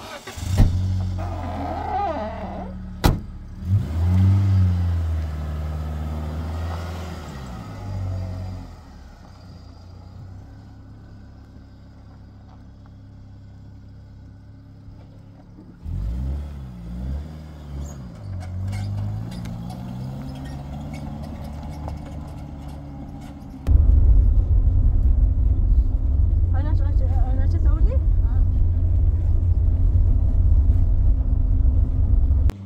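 Pickup truck engine running, revving up and down a few times, with a sharp click about 3 s in. From about 24 s in it becomes a loud, steady low rumble of the engine and tyres on a rough dirt track, heard from inside the cabin.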